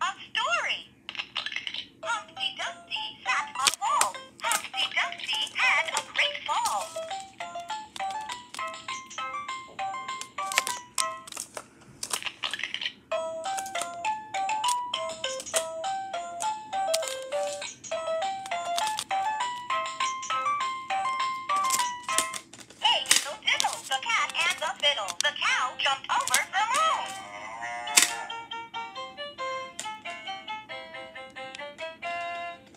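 VTech Rhyme and Discover Book toy playing through its small speaker: a recorded voice and short electronic melodies in simple stepped notes, with many short clicks from its buttons being pressed.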